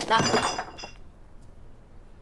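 A woman's voice finishing a sentence, ending about a second in, with a brief high ringing note over her last word; then only faint room tone.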